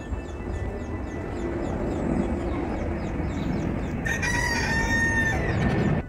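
Rooster crowing: one long call in the second half.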